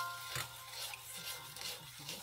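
Spoon stirring a thin, liquid mixture in a small metal saucepan, with faint scraping against the pan's sides and bottom.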